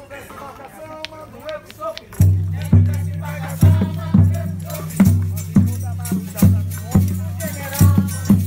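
Live folk percussion starting about two seconds in: a deep, resonant drum beating a steady pattern of paired strokes, with shaker rattles on the beat. Voices sound before the drum comes in.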